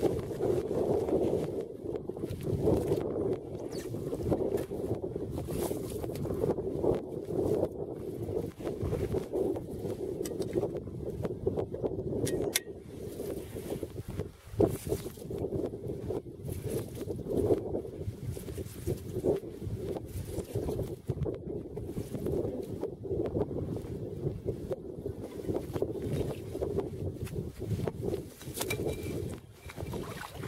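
Wind buffeting the microphone: a steady, gusting low rumble, with a single sharp click about twelve seconds in.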